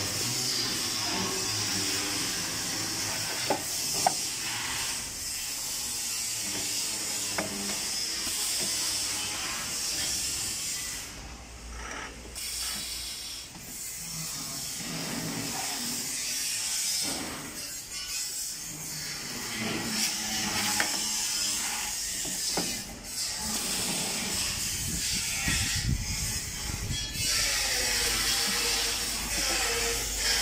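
Steel sheet being handled and folded on an electromagnetic sheet metal brake, with a few sharp metallic clicks about four seconds in and a low rumble near the end as the bending beam swings up, over a steady hiss.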